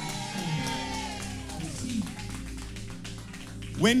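Electronic keyboard playing soft, held chords with long sustained notes.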